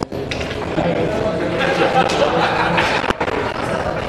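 Indistinct chatter of several spectators talking at once in a billiard hall. The sound cuts out briefly twice, once right at the start and once about three seconds in.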